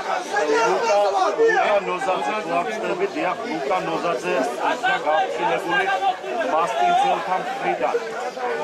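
Speech: several voices talking, overlapping one another.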